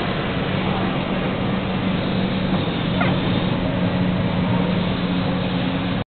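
SF-6040E shrink tunnel running: a steady rush of air from its heater blowers, with a constant low hum from the blower motors and the roller conveyor carrying a carton through the tunnel.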